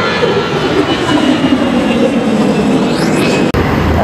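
Loud, steady engine and traffic noise from vehicles on a busy multi-lane road below an overpass.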